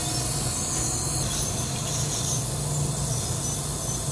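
Steady hiss with a low hum underneath and a faint, high, thin whine: dental clinic equipment and ventilation running while a dental instrument is in use.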